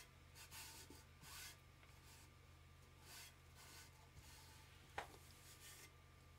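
Faint rubbing of a hand smoothing fabric onto a tumbler, in several short swishes, with one sharp click about five seconds in.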